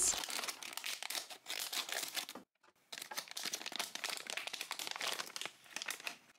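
Shiny thick plastic blind bag crinkling as it is cut open with scissors and handled, with a brief pause about halfway through, and the clear plastic packs inside pulled out.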